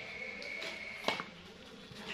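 Quiet background with a faint steady high-pitched whine, and a single light knock about a second in from bread buns being handled on a metal baking tray.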